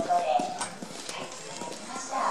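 A man's voice through a public-address microphone and loudspeaker, strongest in the first half-second, with scattered sharp clicks and knocks throughout.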